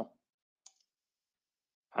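A single short click on the computer about two-thirds of a second in, as the notebook cell is run; otherwise near silence.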